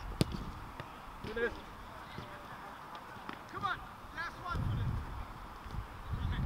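A football struck once with a sharp thud just after the start, then short shouted calls from players across the pitch over a low outdoor rumble.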